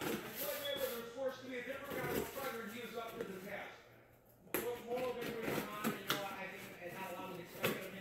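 Low voices talking in the background, with a few sharp taps and scrapes from a small cardboard box being handled and cut open with scissors.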